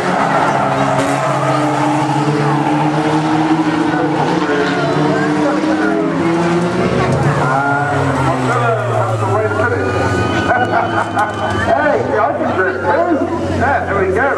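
Banger racing cars' engines running hard as the cars race round the oval, with engine tones rising and falling as they pass. In the second half, voices shouting from the crowd join in over the engines.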